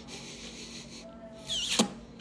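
A person eating close to a phone microphone: a soft hiss while chewing, then a short loud rubbing noise about one and a half seconds in.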